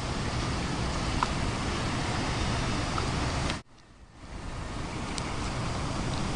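Wind on an outdoor microphone: a steady rushing noise with a deep rumble. It cuts off suddenly about three and a half seconds in, then builds back up.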